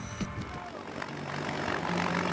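Transport aircraft's engine drone and rushing wind in the cabin with the rear ramp open, a steady low hum under a roar of air that grows louder.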